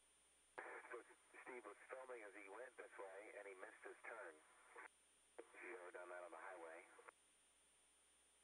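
A voice heard over a narrow-band radio link, thin-sounding, in two transmissions that start and stop abruptly with a short gap between them.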